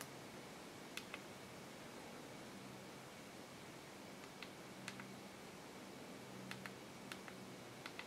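Faint clicks of the Amazon Kindle 4's d-pad and buttons being pressed, several scattered single clicks and quick pairs, over quiet room tone.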